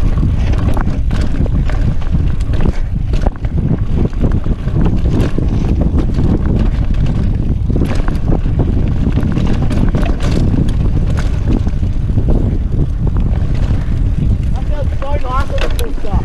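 Wind buffeting a GoPro microphone on a mountain bike riding fast down a dirt singletrack, with a steady rumble of tyres on dirt and frequent rattles and knocks from the bike over bumps.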